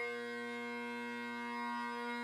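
Great Highland bagpipe drones holding one steady chord.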